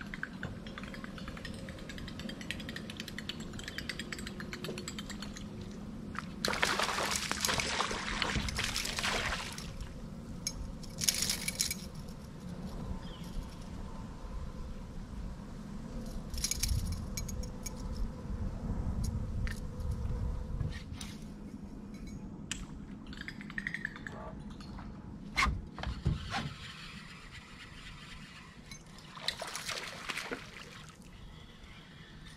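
Water splashing and sloshing around a small boat, coming in several louder spells, with scattered sharp knocks and clicks.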